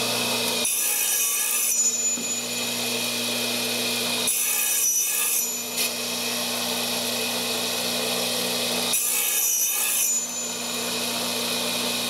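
Power saw fitted with a thin fret-slotting blade running steadily, with three hissing cutting passes through an ebony fretboard, each about a second long: near the start, in the middle and near the end. The blade is deepening a fret slot that was not yet deep enough.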